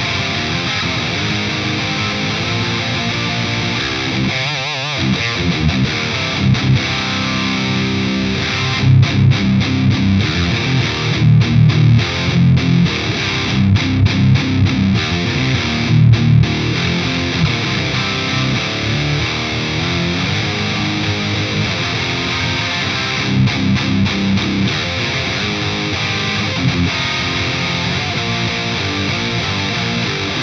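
Heavily distorted electric guitar in drop C tuning, played through a boosted Synergy DRECT module, a Mesa Dual Rectifier-style preamp. It plays a high-gain riff with heavy low end and a chugging rhythm cut by sharp stops. The playing breaks off briefly about four and a half seconds in.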